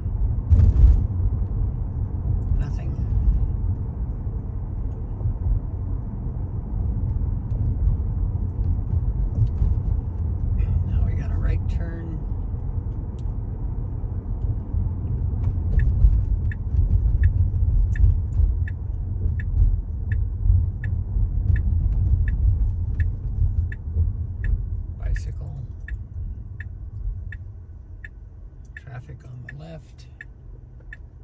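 Low road and tyre rumble inside a Tesla's cabin while it drives, fading over the last few seconds as the car slows to a stop. From about halfway in, the turn-signal indicator ticks steadily, about one and a half ticks a second.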